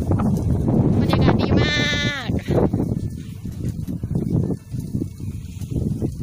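Wind buffeting a phone microphone while cycling, a low rumble that eases toward the end. About a second and a half in, a short high-pitched squeal drops in pitch as it ends.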